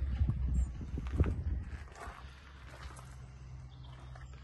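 Footsteps and a few thuds in the first second and a half as someone climbs up into the back of a van onto its ply-lined load floor, then quieter movement.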